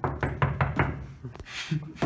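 A quick run of about six sharp knocks over a second and a half, followed by a brief hiss.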